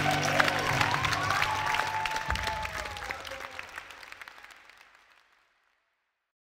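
Audience applauding over the last ringing notes of a live rock band, fading out steadily to silence about five seconds in.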